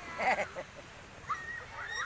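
A young child's brief high-pitched vocal sounds: a short loud burst about a quarter second in, then a rising call near the end.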